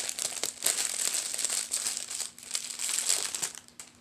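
A lipstick's clear plastic wrapper crinkling in the hands as it is unwrapped, in quick irregular clusters of crackles that thin out and die away near the end.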